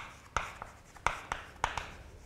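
Chalk writing on a blackboard: a quick series of sharp taps and short scrapes as the chalk strikes and drags across the board, about three strokes a second.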